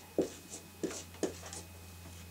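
A dry-erase marker writing numbers on a whiteboard, in several short separate strokes.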